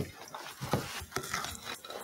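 Wooden spoon scraping and scooping a thick, crumbly cookie-crumb mixture in a glass bowl, with soft scrapes and a few light clicks as it works the mass out.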